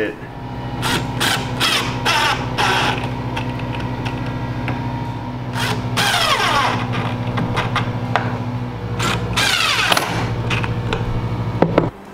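Cordless impact driver running almost continuously, its rapid hammering driving screws through a metal drawer slide into the cabinet, ending with a few clicks just before the end. Two sounds sweep steeply down in pitch, about six and about nine and a half seconds in.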